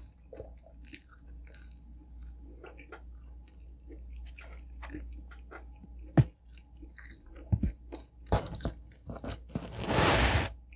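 Close-up chewing of pepperoni pizza with soft, wet mouth clicks, then a single sharp knock about six seconds in. Crackly bursts follow from the pizza crust being torn apart on its cardboard, loudest near the end.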